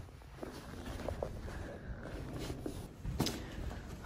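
Quiet footsteps and rustling of clothing and a bag, with a few soft clicks and a sharper click about three seconds in.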